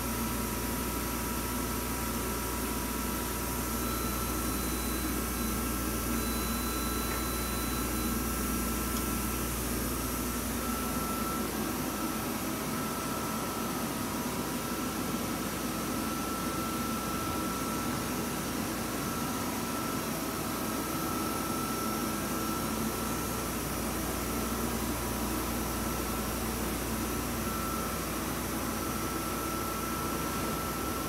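Hauser S 35-400 CNC jig grinder switched on and running: a steady mechanical hum and hiss with a thin, high, steady whine. The deep part of the hum fades about ten seconds in and comes back over the last few seconds.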